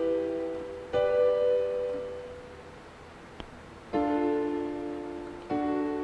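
Digital keyboard playing chords one at a time, each struck and left to ring and fade. A chord is ringing at the start, and new ones come about a second in, just before four seconds and about five and a half seconds in.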